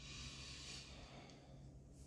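Faint breath out through the nose lasting about a second, a soft sigh while she savours a mouthful of food.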